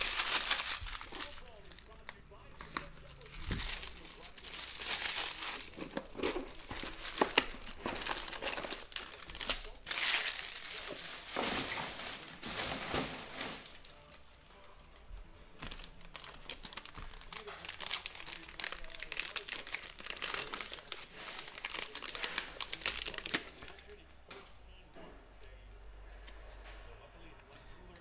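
Plastic shrink wrap crinkling and tearing as it is pulled off a sealed box of trading cards, followed by lighter crinkling of plastic packaging, which grows quieter about halfway through.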